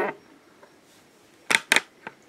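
Two short, sharp rustling clicks about a second and a half in, from hands handling small plastic doll accessories.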